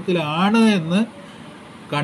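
A man talking for about a second, then a pause of about a second with only faint background noise.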